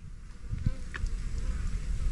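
A flying insect buzzing close by, over a low rumble with a few soft bumps.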